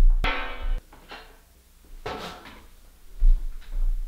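A stainless steel pedal trash can clanks as its lid opens and the dough is tipped in: two sharp knocks at the start with a short ringing after. Background music plays, and a few softer knocks follow.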